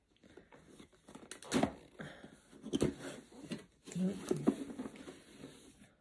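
Cardboard box and paper packaging rustling and crinkling as the contents are pulled out by hand, with sharper handling sounds about one and a half and three seconds in. A brief murmur of a voice comes about four seconds in.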